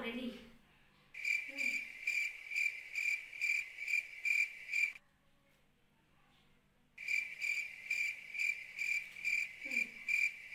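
A cricket chirping steadily, about two and a half chirps a second. It stops abruptly for about two seconds midway, then starts again.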